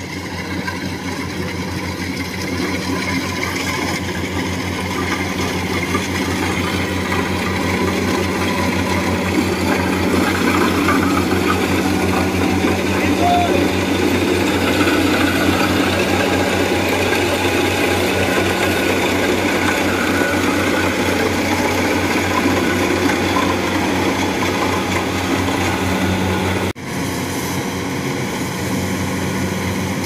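Kubota DC-70 rice combine harvester's diesel engine running steadily under load as the machine cuts and threshes ripe rice, a constant mechanical hum with a brief drop near the end.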